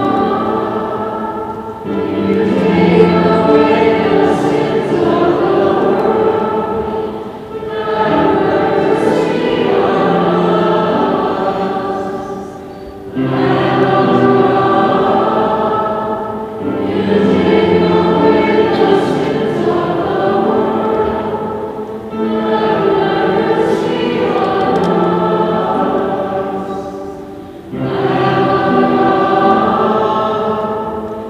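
A choir singing a sacred song in repeated phrases about five to six seconds long, each starting strongly and fading before the next begins.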